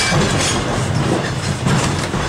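Los Angeles Railway No. 665, a 1911 Huntington Standard streetcar, running along the track, heard from its front platform: a steady rumble of wheels on rail with scattered clicks from rail joints.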